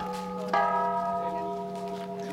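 Metal temple bell struck about half a second in, ringing on with several steady tones that slowly fade, over the dying ring of an earlier strike.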